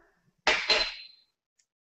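A small glass spice dish knocking twice against a hard surface about half a second in, with a brief glassy ring.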